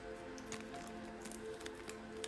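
Soft background music of long held notes, with scattered faint crackles and clicks from hands touching the microphone.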